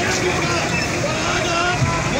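Crowd of protesters, many voices talking and shouting over one another in a steady hubbub.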